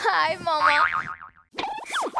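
Cartoon-style comic sound effects laid over a TV comedy skit: a brief voice, then a springy boing whose pitch wobbles up and down, and near the end a quick falling pitch sweep.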